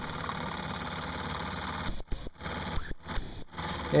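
Mamod SP4 model stationary steam engine running steadily with a hiss of steam. About halfway in, the sound breaks off briefly several times, with short high squeals in between.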